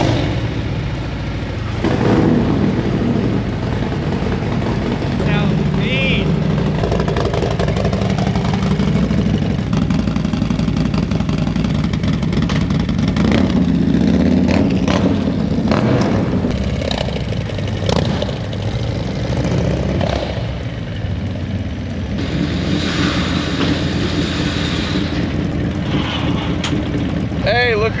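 Two Harley-Davidson Milwaukee-Eight V-twin engines, a cammed 107 and a stock 117, started about two seconds in and then running steadily, with a few rises in engine speed.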